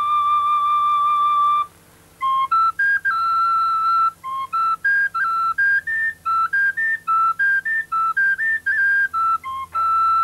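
A high-pitched solo flute playing a melody: one long held note, a brief break just before two seconds in, then a quick run of short notes stepping up and down.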